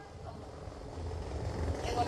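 A pause in a woman's amplified preaching: a low, steady background rumble, with her voice coming back through the microphone near the end.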